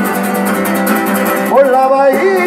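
Two acoustic guitars strumming an instrumental passage of a Spanish song, played live. About a second and a half in, a singing voice slides up and holds a note.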